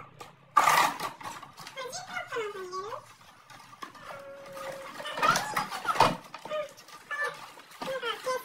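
A cardboard box being torn open and a plastic case handled: a sharp rustle about half a second in, then more sudden crinkling and clacking a few seconds later, with voices gliding up and down in between.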